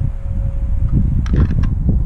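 Wind buffeting the microphone, a heavy low rumble, with a faint steady whine that stops a little past the middle.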